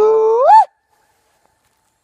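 A man's 'sooey' hog call shouted through cupped hands: one loud held call that swoops up in pitch at its end and breaks off after about half a second.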